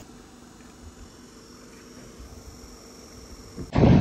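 Faint steady background hiss with a low hum. Near the end it cuts suddenly to a loud rush of wind across the microphone.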